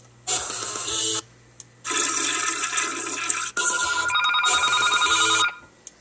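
A toilet flushing, chopped up in an edit: a short rush of water, then a longer one about two seconds in. Then a trilling electronic tone like a telephone ring plays over it for about two seconds and cuts off.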